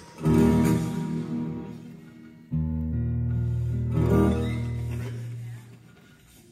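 Acoustic guitar strummed just after the start, the chord left to ring and die away, then low strings struck about two and a half seconds in and again near four seconds, ringing and fading before the end. The guitar is being checked for tuning, since it has gone out of tune.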